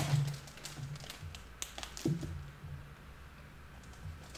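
A few faint taps and clicks of small objects being handled on a desk, over a low hum.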